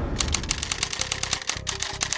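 Rapid typewriter-style ticking sound effect, about ten sharp clicks a second, starting just after the beginning, over a low steady music bed.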